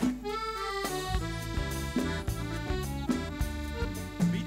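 Live folk band playing an instrumental passage: held melody notes over acoustic guitar, bass guitar and conga drums.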